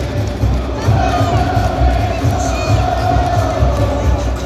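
A large crowd of football supporters chanting and cheering together over a steady low beat, with one long note held by the crowd from about a second in until near the end.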